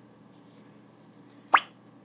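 A short cartoon 'bloop' pop sound effect, a quick upward-sliding tone, about one and a half seconds in, over a faint low hum.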